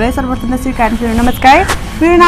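Only speech: a young woman talking.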